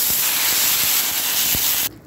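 Freshly drained, diced banana stem sizzling steadily in hot coconut oil and tempering spices in a kadai, the moisture on the pieces hissing as it hits the oil; the sizzle cuts off suddenly near the end.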